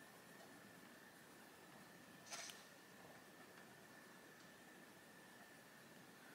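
Near silence: faint room tone with a thin steady high tone. About two seconds in comes one brief soft scratch of a coloured pencil on paper.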